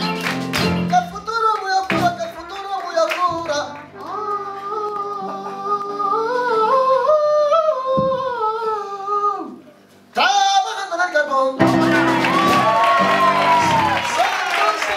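A young man singing a slow solo melody in a clear voice, holding wavering notes and sliding between them, with plucked guitar accompaniment. After a short break near the end the sound becomes fuller and louder.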